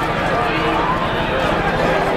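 Dense street crowd celebrating: many voices shouting and talking over one another in a steady, loud babble.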